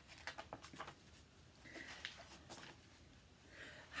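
Faint rustles and soft clicks of a paperback book's pages being turned by hand, coming several times in the first couple of seconds.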